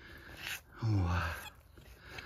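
A man's voice: one short low vocal sound about a second in, with a brief breathy sound just before it.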